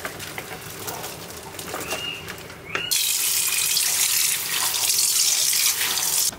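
Boiled cabbage and carrots sliding from an aluminium pan into a plastic colander in a steel sink, with light clatter. About three seconds in, a tap comes on suddenly and water runs steadily onto the pan and vegetables in the colander, rinsing them.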